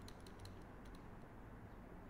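A handful of faint computer-keyboard keystrokes, mostly in the first second, over a low steady hum.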